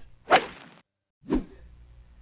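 Two quick whoosh sound effects about a second apart, edited in as a transition between show segments; the second reaches lower in pitch than the first.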